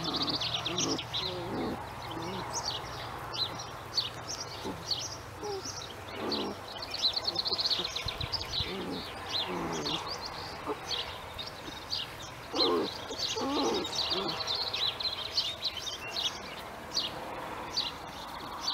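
Birds chirping and singing steadily in the background, many quick high chirps. A few short, lower, sliding calls come through as well, clearest about thirteen seconds in.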